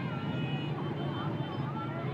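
Many motorbike engines running in slow, dense street traffic, with shouting voices over them and a few short, high held tones.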